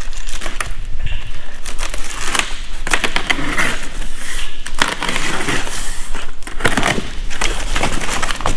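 Cardboard boxes being opened by hand: a blade slitting packing tape, with the cardboard flaps crinkling, scraping and knocking as they are pulled open, in a run of irregular crackles and sharp clicks.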